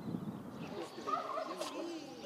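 Fowl calling faintly over quiet outdoor background, a wavering, warbling call starting a little under a second in and running about a second.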